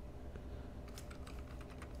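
Faint, irregular clicks of a computer keyboard over a low steady hum.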